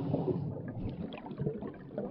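Water splashing and bubbling as a sound effect: a rush of water that ends about half a second in, then scattered bubbling pops.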